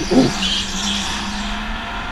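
Go-kart running through a corner, heard from its onboard camera: a steady low drone with a faint tyre squeal about half a second in.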